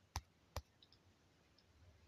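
Two short, sharp clicks about half a second apart as keys, likely the backspace, are tapped on a touchscreen keyboard.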